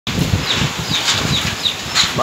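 Wind buffeting the phone's microphone in irregular low gusts over a steady rushing hiss. Several short high chirps come one after another through it.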